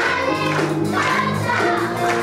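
A choir singing with instrumental accompaniment: voices moving over steady held notes.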